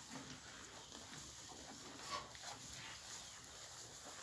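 Two young English Longhorn calves feeding on hay: faint rustling and munching as they pull at it and chew, a little stronger about two seconds in.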